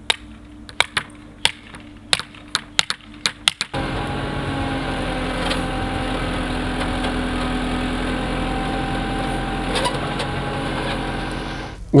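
Irregular hammer blows on wooden stakes and boards, about a dozen strikes. About four seconds in, a JCB backhoe's diesel engine takes over, running steadily.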